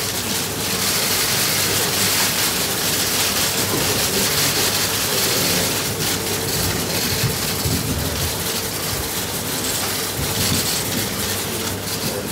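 Many press cameras' shutters firing rapidly and continuously, a dense steady clatter of clicks, over a faint steady hum.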